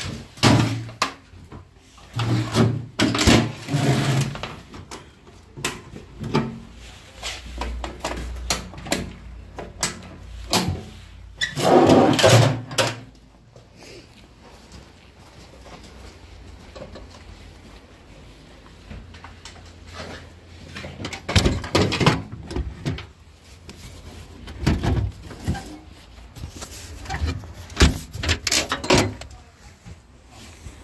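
Sheet-metal toolbox being handled and carried: irregular knocks, clanks and rattles, with a dense rattle lasting about a second and a half near the middle and more clusters of knocks in the last third.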